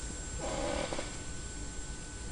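A pause in speech: quiet room tone with a low hum and a faint steady high-pitched whine. About half a second in there is a brief faint sound, likely a breath or murmur from the man.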